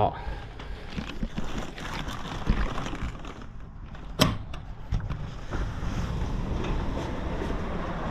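Handling noise and plastic rustling, then a sharp click about four seconds in as an aluminium balcony sliding door is unlatched and slid open. From about halfway, steady road-traffic noise from outside comes in.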